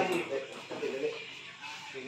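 Men's voices talking quietly and indistinctly in the background, fading after the first moment; no ball or paddle hits stand out.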